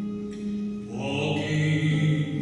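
Live music for a duet: sustained instrumental accompaniment, with a man's singing voice coming in about halfway through.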